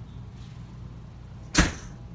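A single sharp knock about one and a half seconds in, over a steady low hum.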